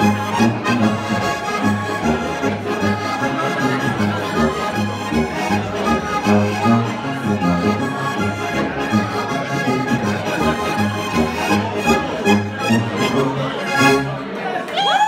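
Alpine folk polka played live on two Steirische Harmonika (diatonic button accordions), with a tuba carrying the oom-pah bass line in a steady two-beat rhythm.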